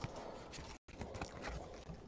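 Faint handling noise of trading cards, a soft rustle with a few light taps as cards are shuffled in the hands and a card in a plastic holder is moved. The sound drops out to total silence for a moment just before halfway.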